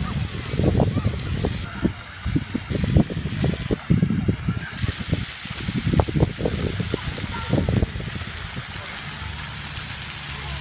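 Splash-pad fountains hiss steadily. Over them, irregular low thumps and buffeting on the microphone run from about half a second in until about eight seconds and then stop.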